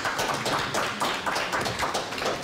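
Applause from a small crowd: many quick, irregular claps.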